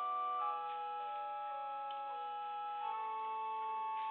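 Pipe organ playing slow, sustained chords, the held notes changing every second or so.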